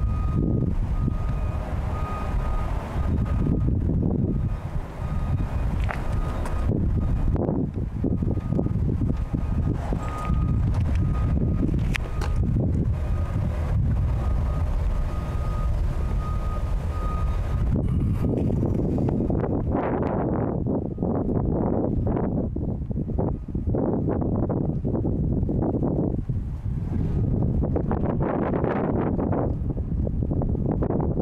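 Wind buffeting the microphone: a loud, uneven low rumble with gusty swells. For about the first half a faint, thin high tone sounds in the background.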